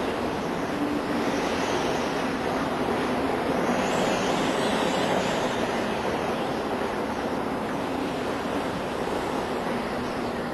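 Storm waves and wind at sea: a steady, dense rushing of heavy surf, with a faint low held tone underneath.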